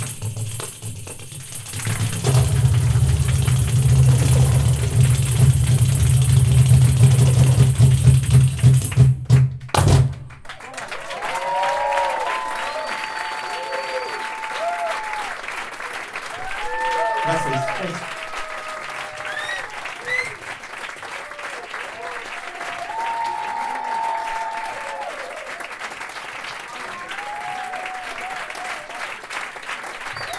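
Live percussion ensemble playing loudly, with a tambourine and a deep, pounding drum, for about ten seconds before stopping suddenly. Audience applause and cheering follow to the end.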